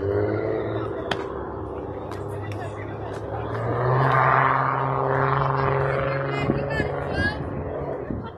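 Voices of players and spectators chattering and calling out at an outdoor softball game, growing louder about halfway through, over a steady low hum. A single sharp click sounds about a second in.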